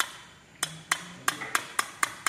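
A series of about six sharp, hard taps or knocks, unevenly spaced at roughly three a second, each with a short ringing tail.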